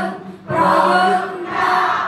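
A large group of young men and women singing a song in Khmer together as a choir, a few of them leading on microphones. The singing breaks briefly for a breath just under half a second in, then the next phrase comes in.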